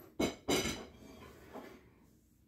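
Steel nails clinking against each other as they are handled and gathered together: a few quick metallic clicks in the first half second, then a fainter one later.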